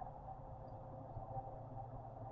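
Quiet room tone: a faint steady low hum with no distinct sounds.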